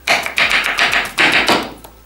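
Kitchen knife chopping a peeled banana into slices on a wooden cutting board, a quick series of knocks as the blade meets the board.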